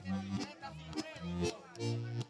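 Live merengue típico band playing, with short held low notes repeating, while a man laughs over the music.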